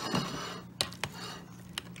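A few light, sharp clinks of metal serving utensils against a glass plate and bowl as food is dished up, over a faint steady hum.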